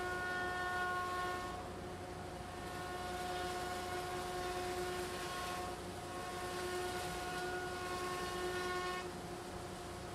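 Oliver long-bed jointer running with a steady whine as a heavy pecan slab is fed edge-down across its cutterhead. The whine's upper tones fade and return twice as the cut goes on.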